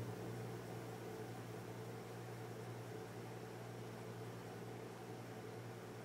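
Faint steady hiss with a low steady hum: room tone and recording noise, with no distinct pencil strokes standing out.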